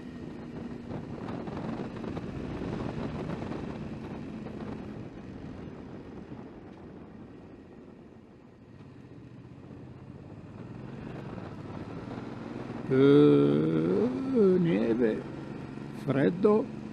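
Suzuki V-Strom 650's V-twin engine running under way, easing to a low about halfway through and picking up again. A man's voice is heard briefly near the end.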